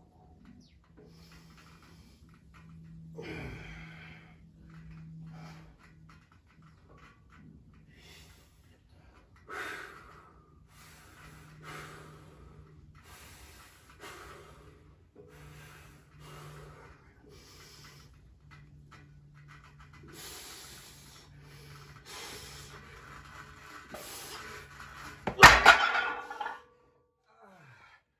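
Hard, strained breathing of a lifter holding two loaded farmer's handles in a static grip hold, a breath every second or two, stronger in the last few seconds. About 25 seconds in, the loaded handles are set down onto concrete with a loud metal clatter, ending the hold.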